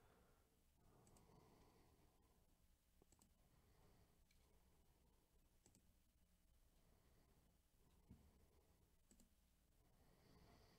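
Near silence: faint room tone with a few scattered faint clicks.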